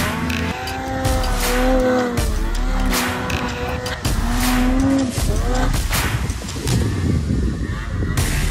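Snowmobile engine revving up and down as the sled is worked through deep powder, mixed with background music.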